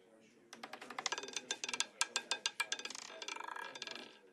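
Roulette ball clattering around a live casino wheel as it drops from the track, a quick run of sharp clicks, about six a second, that starts about half a second in and dies away near the end as the ball settles into a pocket.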